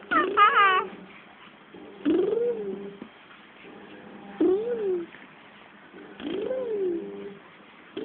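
Five-month-old baby babbling and cooing: a short high squeal at the start, then three drawn-out coos about two seconds apart, each rising and then falling in pitch.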